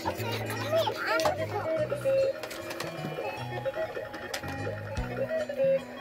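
Electronic tune from a battery-powered Playskool toy playground's Ferris wheel: a simple melody of held notes over a stepping bass line, with a few plastic clicks.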